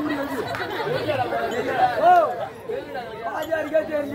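Several people talking, voices overlapping.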